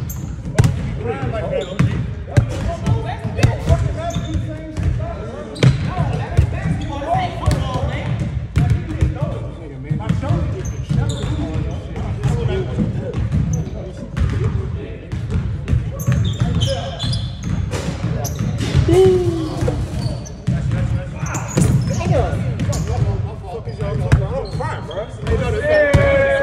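Basketballs bouncing on a hardwood gym floor, irregular and overlapping as several players dribble at once, with voices talking in the background.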